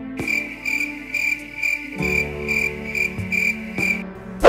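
Cricket chirping, a short high chirp repeating a little over twice a second, over soft background music.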